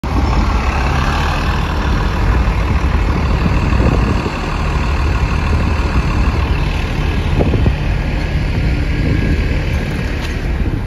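Diesel bus engines running: a Mercedes-Benz Citaro city bus pulling in to the stop and coming to a halt while another bus idles close by, with a steady low rumble throughout.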